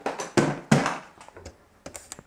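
A handful of sharp knocks and clatters as hard items are handled and set down on a desk, the loudest two in the first second and fewer, softer ones after.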